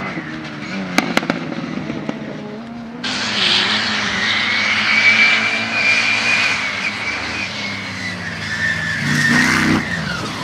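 Off-road competition vehicles' engines running and revving as they race across a muddy field course, with two sharp clicks about a second in. About three seconds in the sound jumps louder with a high whining tone that holds steady, and near the end a nearby engine revs up.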